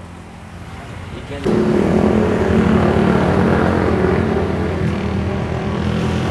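A motor vehicle's engine running close by, getting suddenly louder about a second and a half in and then holding steady revs.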